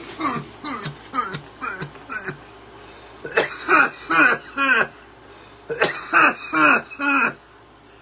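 A man coughing and clearing his throat after inhaling a large cannabis dab: a run of short coughs, then two louder coughing fits, about three seconds in and again about six seconds in, easing off near the end.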